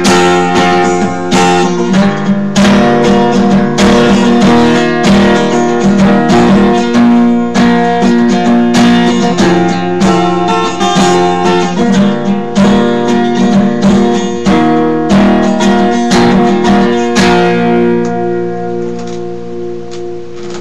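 Acoustic guitar strummed in a steady chord progression with no singing; the last strum comes about 17 seconds in and the chord is left ringing, fading away.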